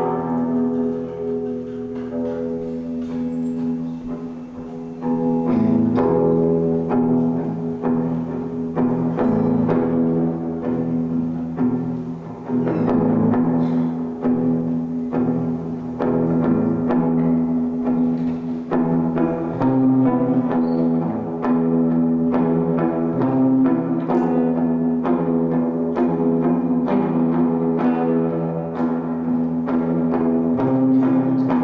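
Live band playing a slow, droning instrumental passage: electric guitar over long held tones, with occasional drum hits.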